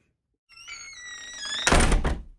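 Outro sound effect: electronic tones swell and grow louder for about a second, then a heavy boom hits near the end and rings out.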